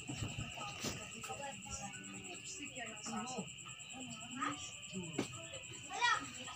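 Indistinct voices talking in the background, under a steady high-pitched tone, with two sharp clicks, one about a second in and one about five seconds in.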